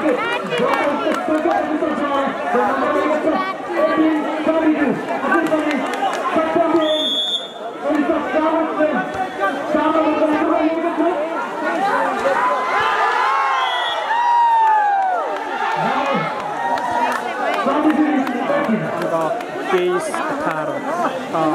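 Crowd of spectators at an outdoor volleyball match talking and shouting over each other, a steady babble of many voices. A brief high steady tone cuts through about seven seconds in, and the shouting swells with rising and falling calls a few seconds later.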